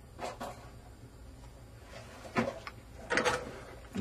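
A few short knocks and clicks from handling a mixer circuit board and its removed controls, clustered about a third of a second in and again near the end, over a low steady hum.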